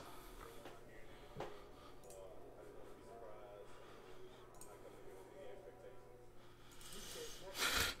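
Quiet room tone with a low steady hum and a faint tap about a second and a half in. Near the end comes a rush of breath just before speech.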